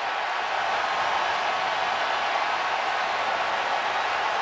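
Large stadium crowd cheering and clapping at a steady level, celebrating a goal just scored.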